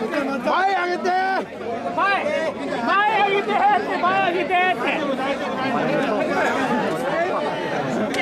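Many mikoshi bearers' voices calling out a short, rapidly repeated carrying chant, the calls coming about every half second, then blurring into a dense mass of overlapping crowd voices in the second half.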